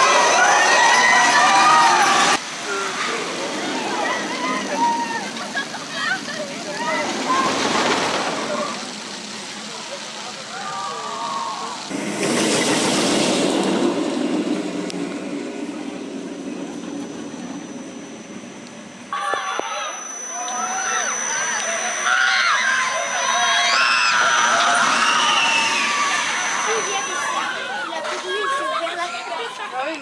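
Straddle roller coaster trains rushing past on the track, with the loudest whoosh about twelve seconds in. People's voices and shouts run through it.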